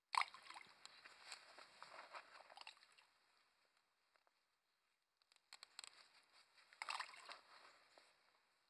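Two bursts of rustling and light pattering as handfuls of loose carp bait are thrown into the margin of the lake. The first starts sharply and fades over about three seconds; the second comes about five seconds in.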